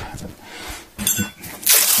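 Masking tape being pulled off the roll in two ripping pulls, a short one about a second in and a longer, louder one near the end.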